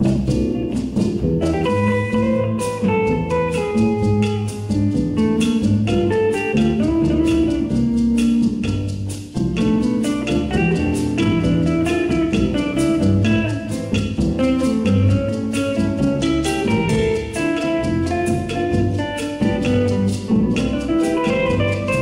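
A jazz quartet of guitar, piano, upright bass and drum kit playing a bossa nova tune live.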